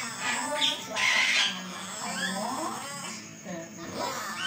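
Javan myna calling: short gliding whistles and chatter, with a harsh rasping burst about a second in.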